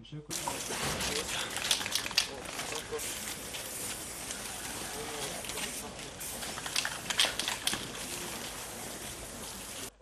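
Outdoor crowd ambience: indistinct chatter from a gathered crowd over a steady hiss, with a few scattered clicks and knocks.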